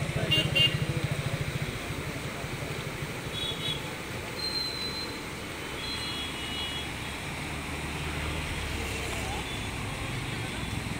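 Road traffic on a bridge: a motor vehicle's engine pulses close by for the first couple of seconds, then a steady wash of traffic noise and fast-flowing river water, with a few faint short high tones in the middle.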